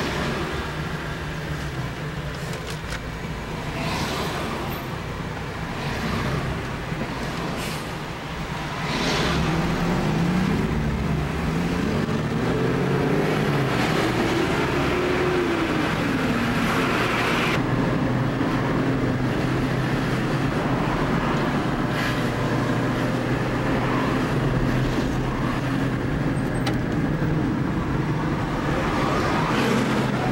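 Motor vehicle engine heard from inside the cabin while driving. Its pitch rises and falls several times over a few seconds in the middle. The sound changes abruptly a little past halfway, and after that the engine drone holds steady.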